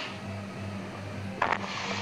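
Quiet background music bed with a steady low hum, and a brief short sound a little past halfway.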